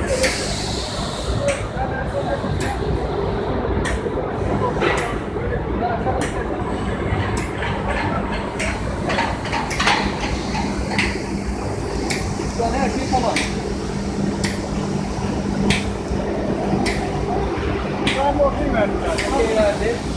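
Factory machinery running with a steady hum, and irregular clicks and knocks from the conveyor line and its handling, with people talking in the background.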